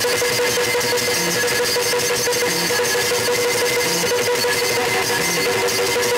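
Yakshagana ensemble accompanying a dance: rapid, dense drum and cymbal strokes over a steady harmonium drone.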